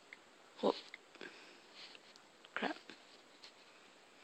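Two short breathy noises close to the microphone, about two seconds apart, with faint clicks of an iPod Touch's on-screen keyboard being typed on in between.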